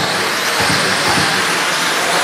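Radio-controlled electric sprint cars of the 13.5-turn brushless motor class racing on a dirt oval, giving a steady whirring hiss of motors and tyres as they pass.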